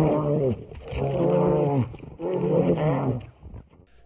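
Brown bears growling as they fight: three long, rough roars, each about a second long with short pauses between. They are the warning growls of a fight between two bears.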